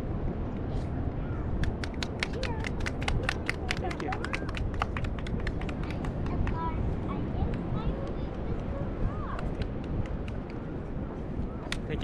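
A pause between cello pieces: steady low wind rumble on the microphone and voices of people nearby. From about one and a half to five seconds in there is a quick series of sharp clicks, several a second.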